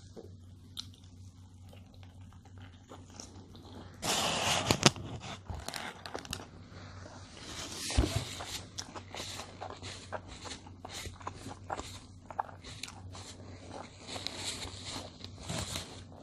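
A person chewing a mouthful of a large hamburger, with many small wet mouth clicks and smacks. There is a louder burst of paper rustling about four seconds in, and a steady low hum underneath.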